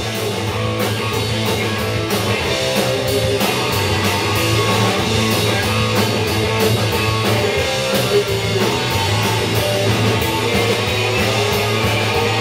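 Live rock band playing an instrumental passage without vocals: electric guitar over a drum kit keeping a steady beat, loud and even throughout.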